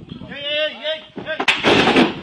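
A short vocal cry with a wavering pitch, then about one and a half seconds in a loud, sudden bang-like burst that runs on to the end.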